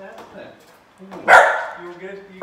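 A dog barks once, loudly, about a second in.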